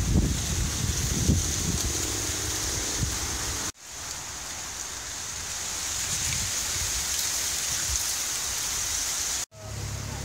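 A short laugh, then a steady rustling hiss of wind moving through dry cornstalks. The sound drops out abruptly twice, about a third of the way in and near the end.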